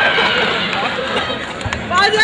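Overlapping voices of a small group of people talking at once, a crowd babble with no single clear speaker.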